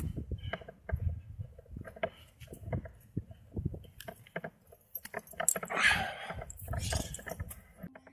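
Rock-climbing handling sounds: hands and shoes scuffing and knocking on quartzite rock while metal gear jingles, in scattered short clicks and scrapes. A brief louder rush of noise comes about six seconds in.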